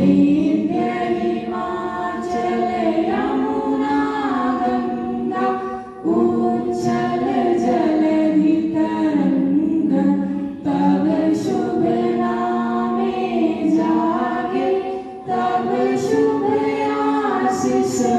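A group of people singing together in unison without instruments, with short breaks between lines about every four to five seconds.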